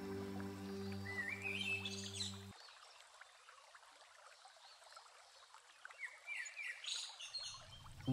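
Songbird singing two short phrases of notes that climb in steps, over the faint steady rush of a shallow stream. Soft instrumental music stops about two and a half seconds in.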